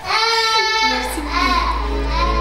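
A high-pitched voice calling out in long, drawn-out notes with no clear words, with background music fading in under it about a second in.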